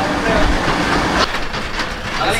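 Open-backed cargo truck under way: low engine and road rumble, with the wooden-slatted bed and its metal frame rattling steadily.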